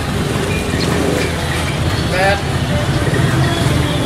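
Busy street-market ambience: scattered voices of people talking over a steady low rumble of vehicle engines and traffic.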